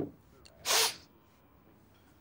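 A man taking one short, sharp snort of cocaine up his nose from a pinch held between his fingers, about half a second in.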